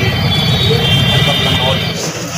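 A motor vehicle's engine running close by at a roadside, with people talking over it.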